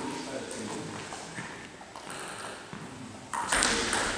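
Table tennis ball striking bat and table in light clicks as a point is played, then a sudden loud noisy burst about three seconds in as play quickens.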